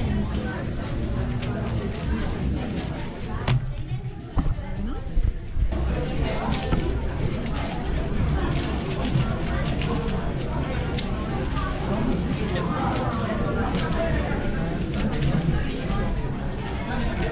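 Chatter of many voices in a busy room, with light sharp clicks scattered throughout. In the first few seconds a 4x4 speed cube is being turned fast in the hands.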